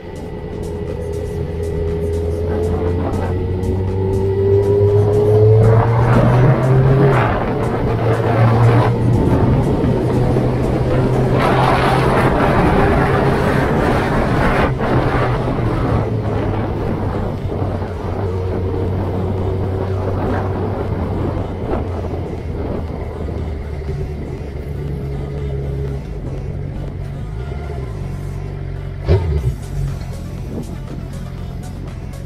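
Motorcycle engine running on the road, its note rising steadily as the bike accelerates over the first several seconds, then holding under two swells of rushing wind noise. A sharp knock comes near the end.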